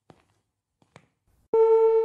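Near silence with two faint clicks, then about one and a half seconds in a single steady synth note from an Artiphon Orba's built-in synth starts abruptly and holds loud.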